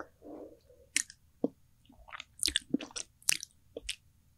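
Close-miked wet mouth sounds: a brief low hum in the first second, then a string of sharp lip smacks and tongue clicks, as at the end of chewing.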